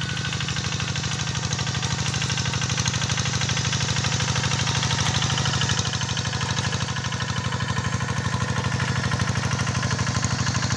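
Single-cylinder diesel engine of a Kubota G1000 two-wheel hand tractor running with a steady rapid beat under load as it pulls a plough through the soil.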